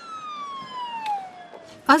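An emergency vehicle's siren: a single tone sliding steadily down in pitch over about two seconds and dying away just before the end.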